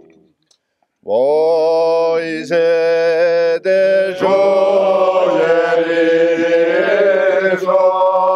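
Corsican polyphonic singing by a small group of men, unaccompanied. After a second's pause the lead voice enters with an upward slide onto a held note, further voices join in turn, and they hold close, ornamented chords together.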